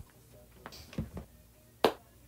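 A few faint ticks around the middle, then one sharp click near the end.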